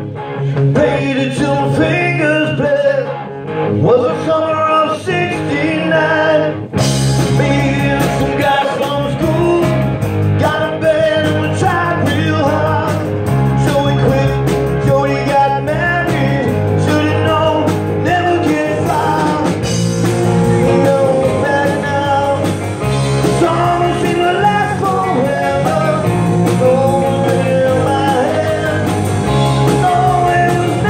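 Live rock band with electric guitars, bass and drums, and a male singer. The first few seconds are a lighter passage without drums; the drums and cymbals come in with the full band about seven seconds in.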